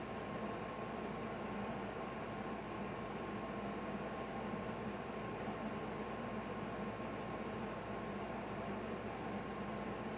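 Steady background hiss with a low hum and a faint thin tone, unchanging throughout, with no distinct events.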